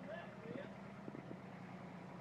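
Tractor engine idling steadily, with a voice briefly heard about half a second in.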